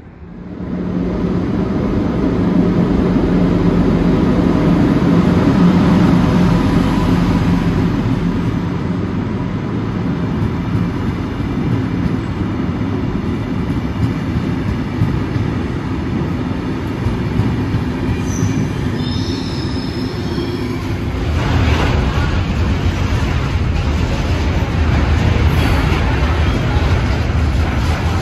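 Passenger train rolling into a station, a steady rumble of wheels on rail with a brief high squeal late on. Then a container freight train passing close by, its rumble heavier and lower.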